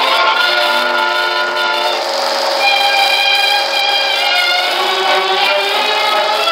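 Cartoon opening-title music, with long held notes that change every second or two and no deep bass.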